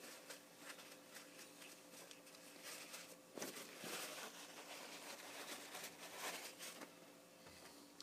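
Faint rustling and handling as gloved hands lift a small anodized aluminium part out of a bucket of rinse water and rub it dry on paper towel, busiest in the middle, over a faint steady hum.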